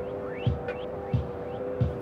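Background music with held tones and a low pulsing beat, with a few faint rising sweeps.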